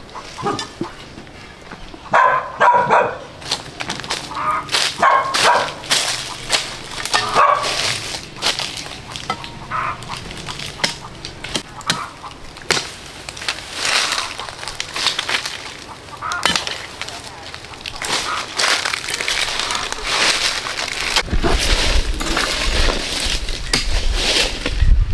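A dog barking in short bursts several times in the first ten seconds, over rustling and crunching in dry leaf litter. A low rumble comes in near the end.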